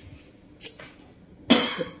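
A short, sudden burst from a person's voice about a second and a half in, after a faint click.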